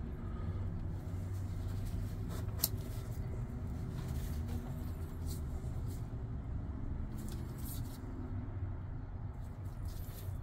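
Steady low background rumble, with a few faint clicks from a folding knife and gloved hands handling it.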